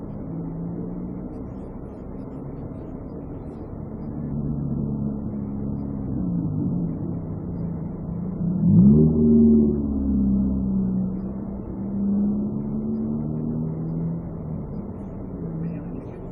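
Car engine running, heard inside the patrol car's cabin, its pitch wandering up and down. About nine seconds in it rises sharply as the car accelerates, the loudest part, then settles back to a steady run.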